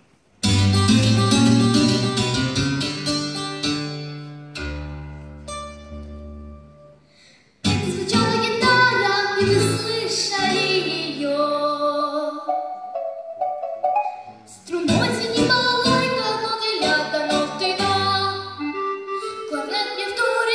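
Instrumental backing track for a song's introduction. A loud chord comes in suddenly about half a second in and fades away, then the music starts again abruptly and fully a little after seven seconds, with a brief dip near fourteen seconds.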